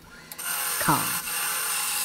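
Wood lathe running with a large oak crotch blank spinning on it, a steady motor whine and hum that grows louder about half a second in. No tool is cutting yet.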